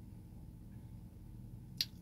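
Quiet car-cabin background with a faint steady low hum, and one short sharp click near the end.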